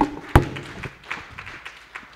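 Two loud knocks about a third of a second apart, then light scattered applause from a small congregation.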